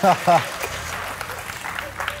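Studio audience applauding, just after a short spoken exclamation.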